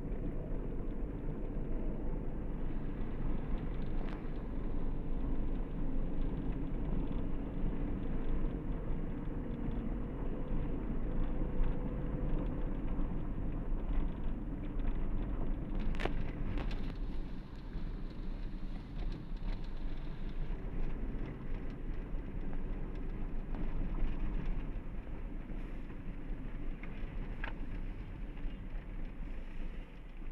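Steady engine and road noise heard from inside a car's cabin while it drives slowly along a street. A single sharp click comes about halfway through, and a fainter one near the end.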